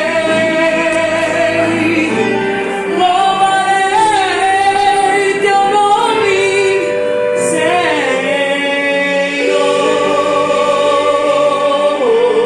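A woman singing a gospel song into a microphone over accompanying music, with long held notes that slide and waver in pitch.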